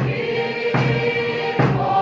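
Congregation singing a hymn together with held notes over instrumental accompaniment with a steady beat, about one stroke every 0.8 seconds.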